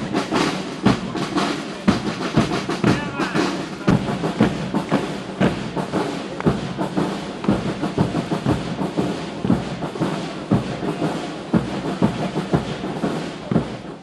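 Military brass band playing a march, with repeated drum beats and the tramp of marching boots on asphalt.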